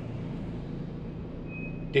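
Steady road and engine noise heard from inside a moving van's cabin, a low hum under an even rush.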